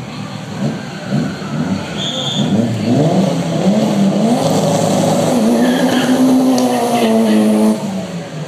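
Drag-racing car engine revving in rising and falling bursts, then held at a steady high pitch for about three seconds before dropping off near the end.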